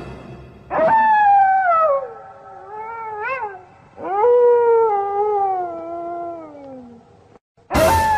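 Long howling wails, one after another, each starting abruptly and sliding down in pitch. The longest runs about three seconds; a shorter one rises and falls quickly in between, and another wail begins near the end.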